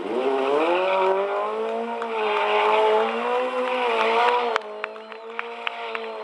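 Sport motorcycle engine held at high revs as the leaning bike is spun in circles on the tarmac, its pitch wavering up and down. The revs drop about four and a half seconds in, followed by a run of sharp ticks.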